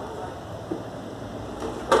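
Plastic tail-light lens of a Fiat Uno Mille being handled and pressed into its housing: faint rustling, a soft knock about a third of the way in, and one sharp click near the end.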